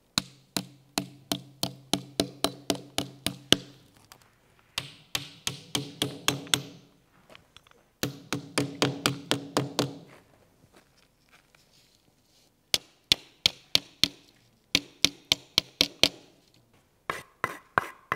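Hammer blows fixing a wooden strip to the end of a wall for plastering. The blows come in quick runs of about four a second, with short pauses between runs. The early runs carry a low ring and the last run a higher one.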